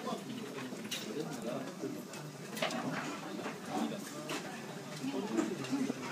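Busy sushi-restaurant ambience: an indistinct hubbub of many voices, with a few sharp clinks now and then.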